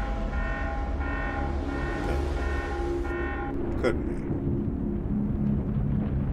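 Film soundtrack: a pitched horn-like tone sounding in repeated pulses for about three seconds, then a sharp click and a low steady rumble.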